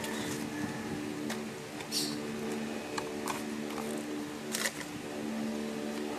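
Sticky tape being picked and peeled off a small plastic toy box: a few brief scratchy crackles, spread across the few seconds, over a steady low background hum.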